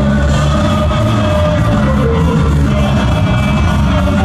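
Live ska band playing loudly through a concert PA: saxophone, trumpet, electric guitar and keyboard with a singer over a steady beat.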